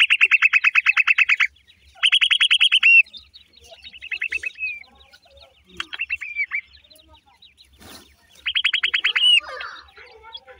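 Francolins calling in bursts of rapid, high, evenly repeated chirps. There are about five bursts, each lasting up to a couple of seconds; the first two are the loudest. A single sharp click comes about eight seconds in.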